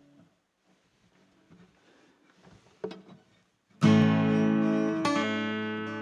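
Acoustic guitar: a few faint handling noises, then a loud strummed chord about four seconds in, left ringing, with a second strum about a second later that also rings on.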